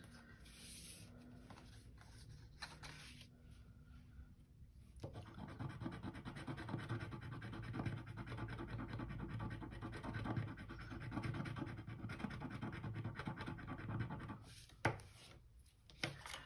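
Coating being scratched off a paper scratch-off card, a dense continuous scratching that starts about five seconds in and stops shortly before the end, after a few seconds of quieter handling.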